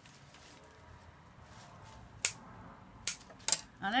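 Scissors snipping through foliage stems: three sharp clicks, a little over two, about three, and three and a half seconds in.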